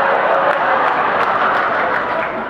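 A large audience applauding and laughing: a loud, dense, steady patter of many hands clapping.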